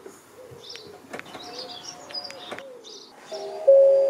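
Birdsong: a pigeon cooing in a slow wavering call, with small birds chirping and a few sharp clicks. Near the end, music comes in with loud sustained chiming notes.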